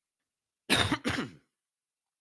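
A man clearing his throat in two short, loud pushes, starting under a second in, the second push falling in pitch.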